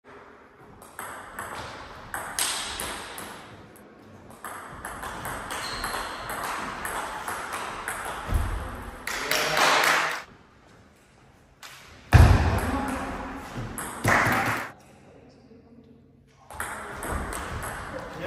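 Table tennis rally: the ball clicking off the paddles and bouncing on the table in a large, echoing hall, with voices in places. A heavy thump about twelve seconds in is the loudest sound.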